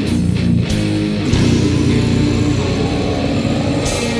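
Death metal band recording: heavily distorted electric guitars playing a riff over bass guitar and drums, with cymbal crashes near the start, about a second in and again near the end.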